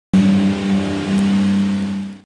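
Modified pulling tractor's engine running flat out under load, a loud steady drone held at one pitch.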